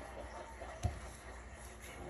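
A single dull thump a little under a second in, over faint television commentary and a low room hum.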